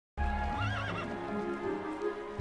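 Background music with a horse's short, wavering whinny about half a second in.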